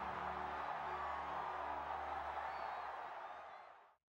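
Stadium crowd noise with a faint, sustained music bed under it, fading out to silence near the end.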